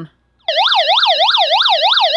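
Electronic SOS siren alarm of a hand-crank emergency radio, set off by holding its SOS button: a loud warbling tone that starts about half a second in and sweeps rapidly up and down, about five times a second.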